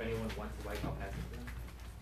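Indistinct voices talking quietly in a small meeting room, over a steady low hum.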